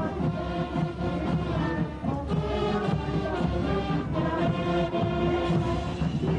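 Military band playing march music, a run of held notes changing pitch every half second or so.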